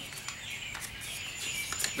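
Faint birds chirping in the background: a few short, high chirps over low, steady outdoor noise.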